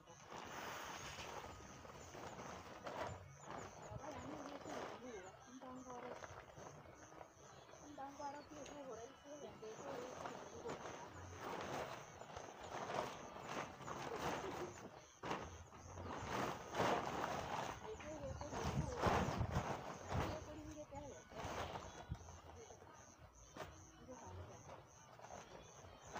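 A large sack rustling as it is picked up and handled, with quiet voices talking in the background.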